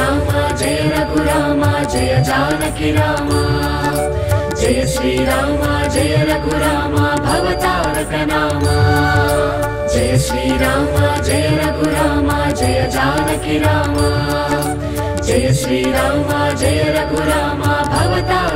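Telugu devotional music with a steady beat over a continuous low drone, a melody line moving above it.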